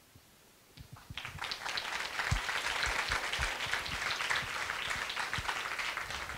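Audience applause: many hands clapping, starting about a second in and quickly building to a steady level.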